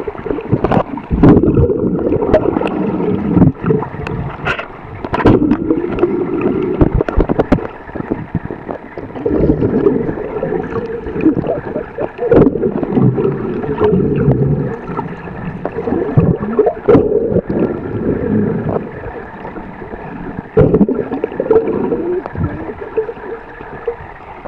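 Muffled underwater sound as heard through a submerged camera: water churning and gurgling, with frequent sharp knocks and clicks, the sound mostly dull and deep with little treble.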